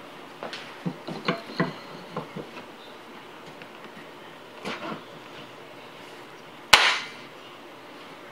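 A wooden reproduction buttstock is handled and pressed against the steel receiver of a Winchester 1895 lever-action rifle on a wooden bench. There is a run of light knocks and clicks in the first couple of seconds, another knock around the middle, and one sharp knock, the loudest, near the end.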